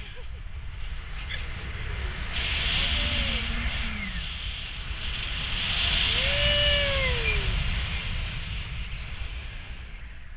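Wind rushing over the microphone in flight under a paraglider, swelling twice, about three seconds in and again around six to seven seconds. A voice gives a long rising-then-falling call around six to seven seconds, with shorter falling calls about three to four seconds in.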